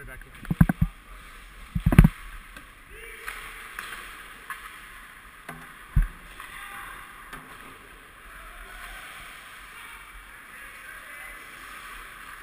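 Ice hockey rink ambience, a steady wash of arena noise with distant voices, broken by sharp close knocks on the bench. There are a few quick ones just under a second in, the loudest knock about two seconds in, and a single knock around six seconds.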